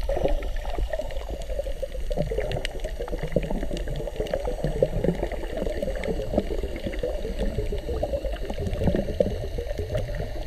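Muffled underwater sound of water churning and bubbling around a camera held under the surface, a steady crackling wash with no distinct events.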